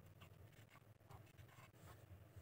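Faint scraping and light clicks of a metal spoon against a glass bowl as it scoops a moist grated mixture, over a steady low hum.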